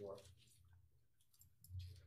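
Near silence: room tone with a faint low hum and a few faint clicks.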